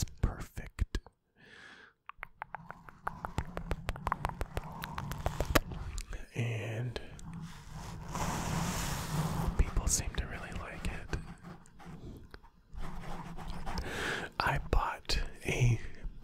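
Close-miked ASMR triggers on a foam-covered microphone: a run of quick clicks from mouth sounds and finger flutters over the first few seconds, then a hand rubbing the foam windscreen with a scratchy rustle about eight seconds in. Soft, inaudible whispering runs through it.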